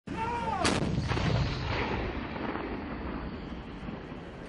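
A single cannon shot from an armoured car's turret gun, its report followed by a low rumbling echo that dies away over a second or two.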